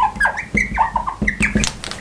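A marker squeaking across a glass lightboard in a quick run of short chirping strokes, several a second, as an equation is written out.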